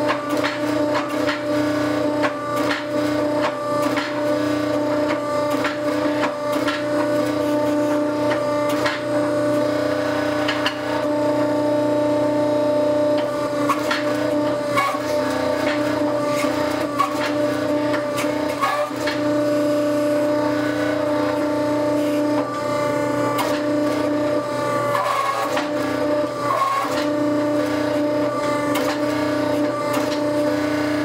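Hydraulic forging press's power unit running with a steady hum throughout, its pitch dipping briefly a few times late on as it works under load. Irregular sharp clicks and crackles come from the hot steel and tooling being squeezed between the dies.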